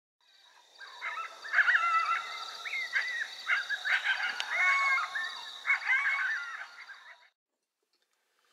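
A group of coyotes yipping and howling, several wavering, bending voices overlapping, over a steady high tone, fading out near the end.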